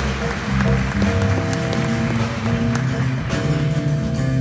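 Live jazz big band playing, with held horn chords over a moving bass line.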